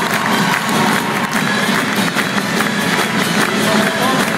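Live acoustic folk band playing, with voices singing and a crowd clapping along in rhythm.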